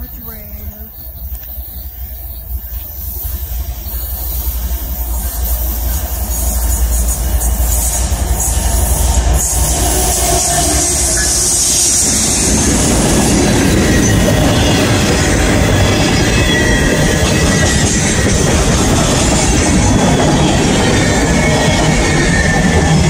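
CSX freight train approaching and passing close by. A low rumble builds over the first several seconds, then from about halfway the loud, steady noise of freight cars rolling past on the rails.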